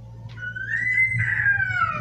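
A single drawn-out, high-pitched cry that starts about half a second in, rises in pitch, then falls away over about a second and a half.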